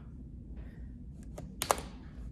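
A few light clicks and then a sharper, louder click near the end, from hands working a film scanner on the desk, over a low room hum.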